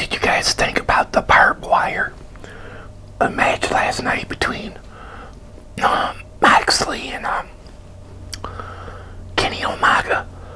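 A man whispering in short phrases with pauses between them, over a faint steady low hum.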